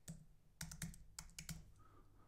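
Faint typing on a computer keyboard: about half a dozen quick keystrokes as a word is typed in.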